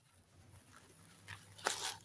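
White paper wrapping crinkling and rustling as it is pulled off a cactus, with a short rustle a little past halfway and a louder burst of crinkling near the end.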